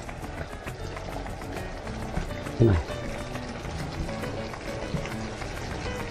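Background music over a pan of chicken, onion and garlic frying, with a fine crackle from the oil as a wooden spatula stirs it. A brief falling voice-like sound stands out about two and a half seconds in.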